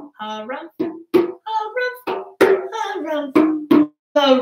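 A man's voice carrying a wordless, sliding melody, punctuated by a handful of sharp hand strikes on a djembe.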